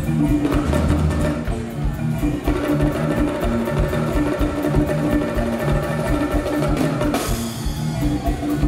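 Mozambican Chopi timbila (wooden xylophones) played live with mallets in a fast, repeating interlocking pattern of pitched wooden notes. A brief swell of high hiss comes about seven seconds in.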